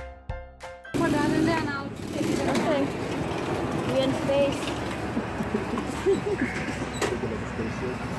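About a second of light music with short plucked-sounding notes, about three a second, cuts off abruptly. It gives way to steady outdoor noise from a go-kart track with karts running, under voices and laughter.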